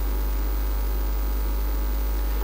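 Steady electrical mains hum: a low drone at the bottom of the range with faint higher overtones, unchanging throughout.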